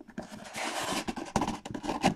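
A cardboard trading-card box being handled: a half-second scraping rub of hands on cardboard about half a second in, then several light taps and knocks.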